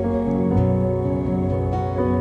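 Worship band playing soft, sustained chords on keyboard and guitar, shifting to a new chord about half a second in.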